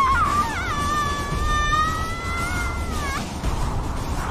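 A short rising cry, then one long high-pitched scream held for nearly three seconds that bends down as it cuts off, over a low rumble.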